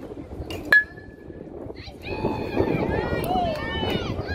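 A metal baseball bat pings sharply as it hits a pitched ball, its ring fading within about a second. About two seconds in, spectators start shouting and cheering.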